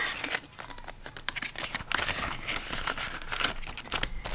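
Paper banknotes rustling and crinkling as hands handle a stack of bills and tuck them into a cash binder's plastic envelope pocket: an irregular run of soft papery ticks and rustles.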